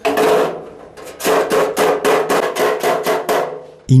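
A hand hammer striking the sheet-steel body of a charcoal grill (mangal) as it is being made. One ringing blow comes first, then about a second in a quick, even run of about a dozen blows, roughly five a second.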